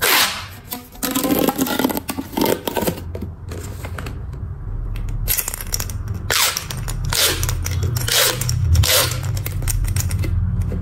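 Corrugated plastic pop tubes stretched and squashed by hand, giving sudden bursts of ratcheting pops and crackles as the ridges snap open and shut. A loud burst comes right at the start, then further bursts every second or so.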